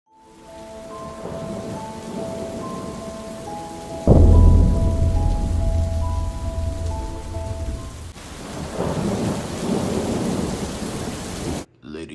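Thunderstorm sound effect: steady rain with one sharp thunderclap about four seconds in, its deep rumble dying away over the next few seconds. A slow tune of held notes plays over the rain for the first eight seconds, and everything cuts off suddenly just before the end.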